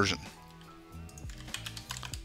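Computer keyboard typing: a few scattered keystroke clicks as lines of code are edited, over quiet background music.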